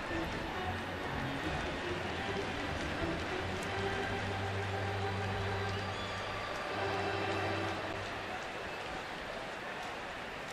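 Ballpark music over the stadium loudspeakers, a few held notes, heard faintly over a steady crowd murmur.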